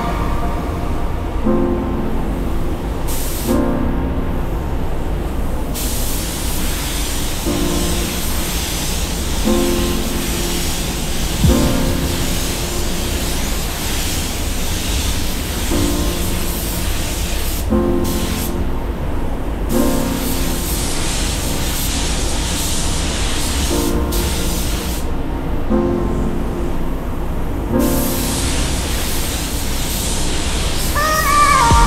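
Iwata Supernova gravity-feed spray gun hissing as it lays silver metallic base coat, in long passes of several seconds with a few short breaks. Background music with a repeating chord pattern plays throughout.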